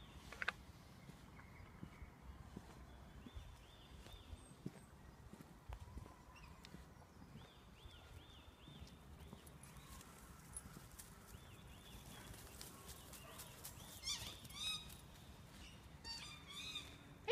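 Faint birdsong in woodland: runs of quick, repeated arched chirps that come and go, with louder, higher calls near the end. A few faint ticks and rustles sound underneath.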